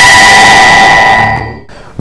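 A short broadcast transition sting: a steady held tone with a hiss over it, fading away about a second and a half in.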